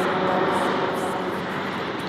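Steady distant engine noise, an even rushing sound that swells slightly and then eases.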